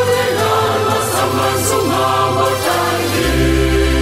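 Church choir singing a Senegalese Catholic hymn in parts. About three seconds in, a steady low held chord comes in beneath the voices.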